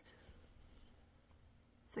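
Faint rustle of a cotton-blend sweatshirt being handled, the fabric rubbing under the fingers, barely above room tone.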